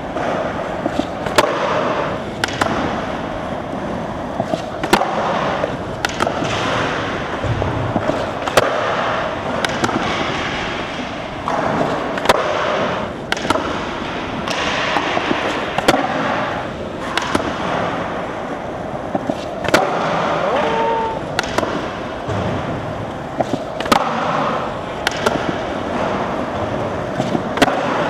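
Skateboard wheels rolling on smooth concrete, broken by repeated sharp pops and clacks as the board is popped and landed, over and over, in nose manual nollie flips out.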